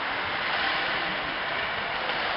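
Ice hockey rink ambience during play: a steady, even wash of noise with no distinct puck hits or shouts standing out.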